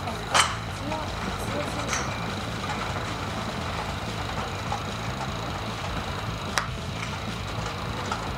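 Outdoor driving range background: a steady low rumble, with a sharp knock about half a second in and a single sharp click a little before the end.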